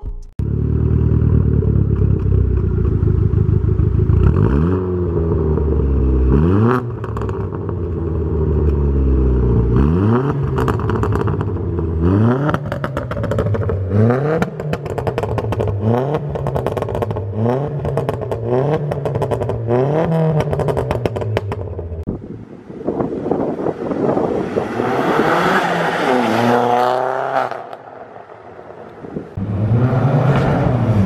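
A turbocharged 2.0-litre Z20LET four-cylinder engine in a tuned Vauxhall Astra van starts up, then is revved over and over, each rev rising and falling about every second and a half, with crackles and pops from the exhaust between revs. Later the van accelerates hard, the engine note climbing high for a few seconds before it drops away near the end.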